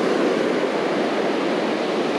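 Ocean surf breaking and washing up the beach: a steady rushing noise.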